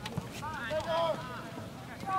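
Voices shouting across a soccer pitch during play, with a sharp knock just after the start.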